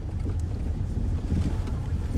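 Steady low rumble of a car's engine and tyres heard from inside the cabin as it drives downhill.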